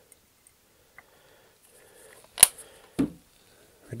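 Small plastic airbrush-paint bottles being handled on a bench: a single sharp click about two and a half seconds in, then a softer, duller knock about half a second later as a bottle is set down.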